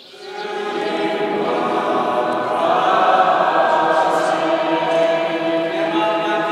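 Choral music: voices holding sustained chords, fading in over the first second.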